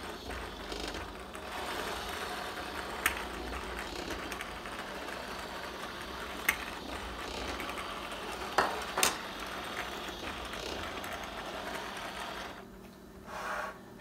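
A 3D-printed PLA model of a Chevy LS3 V8, turned by a small electric motor, running: a steady whir and clatter of plastic gears, crank and pistons with a low hum and a few sharp clicks. It stops about a second and a half before the end.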